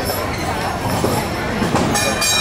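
Disneyland Railroad train, hauled by steam locomotive No. 3 Fred Gurley, rolling as it pulls away from the station, with a sharp click near the end. Crowd voices carry over it.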